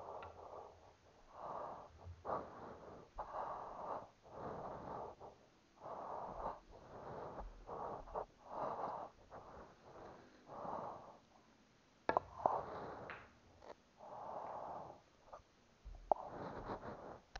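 Breathing close to a head-worn microphone, one noisy breath about every second. About three-quarters of the way through there are a few sharp clacks of pool balls being struck.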